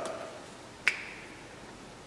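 A single sharp click from a dry-erase marker about a second in, followed by a brief faint squeak, over quiet room tone.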